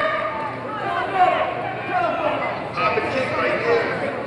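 Indistinct voices talking over one another, echoing in a large gym.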